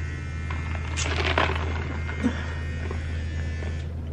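An electric shaver buzzing steadily, with a brief rustle about a second in.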